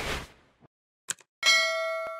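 Subscribe-button animation sound effects: a noisy whoosh fading out in the first half second, a short mouse click about a second in, then a bright bell ding that starts suddenly near the end and rings on.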